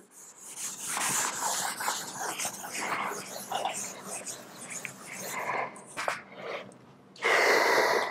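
Felt chalkboard eraser rubbing across a blackboard in repeated swishing strokes, with a louder, longer stroke near the end.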